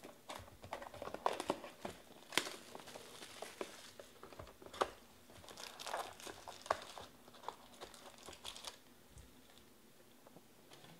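Plastic shrink wrap being torn and crumpled off a cardboard trading-card hobby box, crinkling in irregular bursts of sharp crackles, the sharpest a little over two seconds in and again near five seconds.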